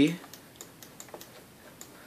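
Faint, light computer mouse clicks, a scattered few, as letters are drawn by hand in a paint program.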